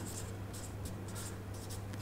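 Felt-tip marker writing on flip-chart paper: a faint run of short scratchy strokes over a steady low hum.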